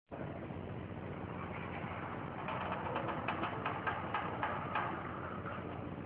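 Footsteps on a hard floor, a run of about nine steps at roughly three a second in the middle, over a steady background noise.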